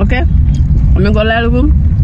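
Steady low rumble of a car's engine and road noise heard from inside the cabin, with a woman's voice speaking briefly near the start and again about a second in.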